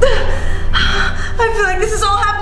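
A person gasps sharply in shock, then gives high, wavering wordless cries, over a low steady hum.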